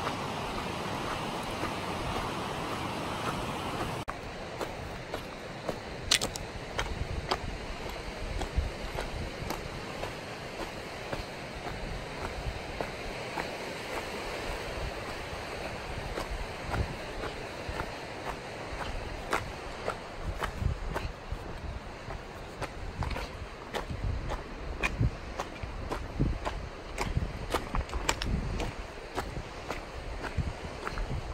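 Wind buffeting the microphone. After a cut about four seconds in, footsteps crunch on a rocky dirt trail with scattered sharp ticks, under continuing wind noise.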